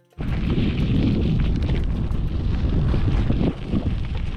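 Wind buffeting the microphone of a camera on a moving bicycle: a loud, steady, rumbling roar that cuts in sharply just after the start.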